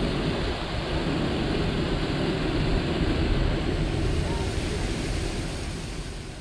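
Wind buffeting the camera microphone: a steady, rumbling rush of noise that fades out near the end.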